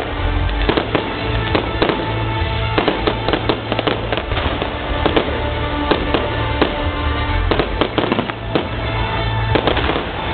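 Fireworks display: aerial shells bursting in quick, irregular succession, several bangs a second with crackling, over music with held notes and a bass line.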